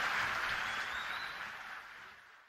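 Audience applause from a live song recording, fading steadily away as the track ends.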